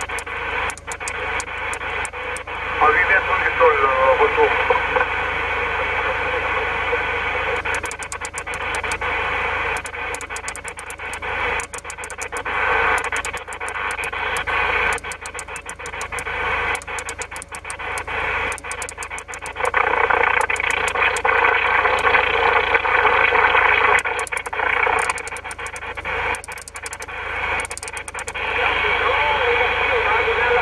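CB transceiver receiving on upper sideband around 27.5 MHz: steady band hiss with garbled, mistuned voices of distant stations as the set is tuned across channels. Frequent sharp crackling clicks run through it.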